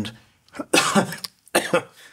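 A man coughing, a longer rough cough followed by a shorter one about a second in.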